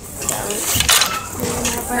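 Hard objects clattering and knocking, with one sharp knock a little under a second in, and a voice starting near the end.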